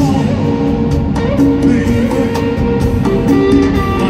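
A live rock band playing loud in a stadium, with guitar to the fore and held notes over a full bass and drum backing.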